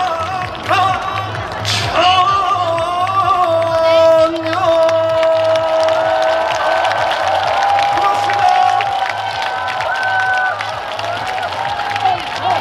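A man singing a trot song live through a stage PA, drawing out one long held note in the middle before further sung phrases. A steady low pulse runs beneath, and the crowd claps and cheers.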